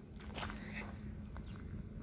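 Faint outdoor background noise with a low steady hum and a few soft, faint ticks.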